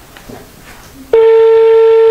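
Telephone ringback tone: one steady beep about a second long, starting about a second in. It is the ringing signal a caller hears while the called phone rings and has not yet been answered.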